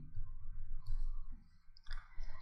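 Faint clicking from a stylus writing on a pen tablet, over a low steady hum.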